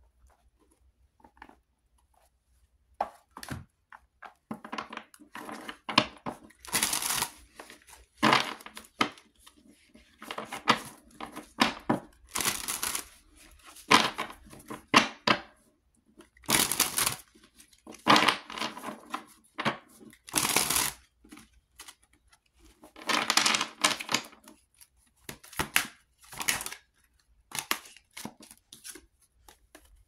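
A deck of tarot cards being shuffled by hand: a run of short rustling bursts of card against card, starting about three seconds in and repeating irregularly until near the end.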